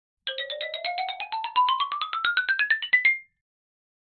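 Short intro jingle: a quick run of about two dozen short electronic notes, roughly eight a second, climbing steadily in pitch and ending on a briefly held top note just past three seconds in.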